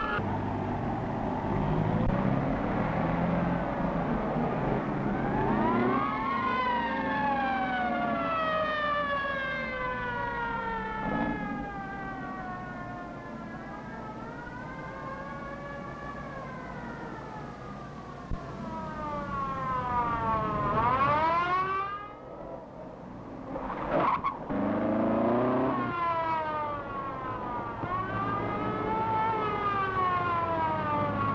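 Police motorcycle's mechanical siren wailing, its pitch winding up and falling away in long slow glides, over a low engine rumble. A little past two-thirds through, the siren dies away briefly, then sweeps quickly back up.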